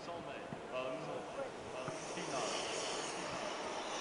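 Indistinct voices over a steady background noise, with a hiss that comes up about halfway through.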